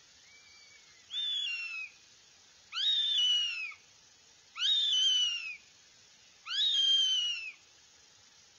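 Young northern goshawks calling on the nest: a faint short call, then four loud, drawn-out whistled calls about two seconds apart, each rising sharply then sliding slowly down in pitch.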